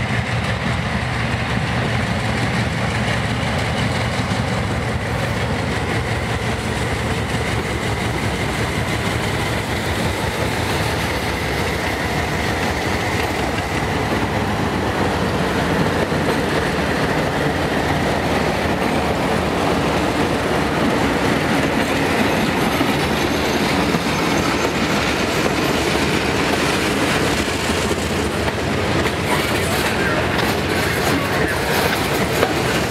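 Diesel freight locomotives running past, their engines humming, then a long string of covered hopper cars rolling by with steady wheel clatter on the rails.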